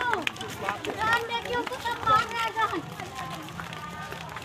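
Several people's voices talking over one another, with hurried footsteps of a group on a road.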